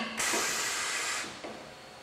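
A click, then a burst of compressed-air hiss lasting about a second from the pneumatics of an automated dart assembly machine cycling as it assembles a dart.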